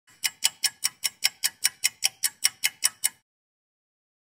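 Rapid, even ticking, about five ticks a second and fifteen in all, stopping about three seconds in.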